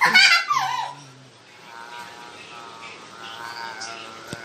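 A loud, shrill cry that falls in pitch over about a second, followed by a quieter, drawn-out whine.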